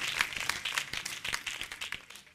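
Applause, many hand claps that thin out and fade away.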